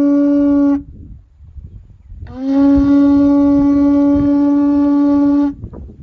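Conch shell trumpet blown in long, steady single-note blasts: the first ends just under a second in, and a second blast starts a little after two seconds, slides up slightly into the same note and is held for about three seconds before cutting off.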